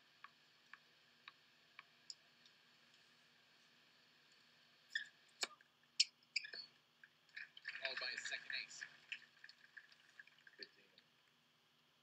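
Faint clicks about half a second apart, then a few sharper clicks, then a brief stretch of quiet, muffled voice about eight seconds in.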